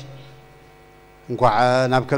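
A steady electrical mains hum, heard on its own in a gap in a man's speech. His voice comes back about a second and a quarter in.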